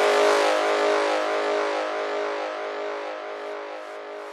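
Breakdown in a progressive psytrance track: no kick or bass, just a held synth chord under a hissing noise wash, both slowly fading.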